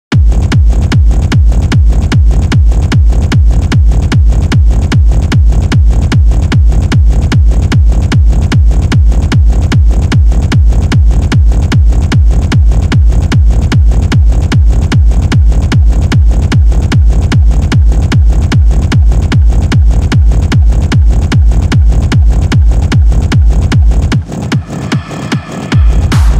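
Techno track with a heavy kick drum pounding a steady four-on-the-floor beat at about two beats a second, over a deep bass and percussion.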